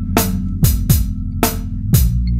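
A looped drum beat, with kick and snare hits at a steady tempo, over held low bass notes that change pitch near the end.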